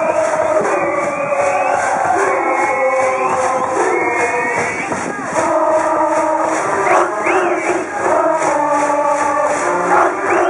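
A brass band plays a high-school baseball cheer song (ōenka), and a large student cheering section chants and sings along to a steady beat.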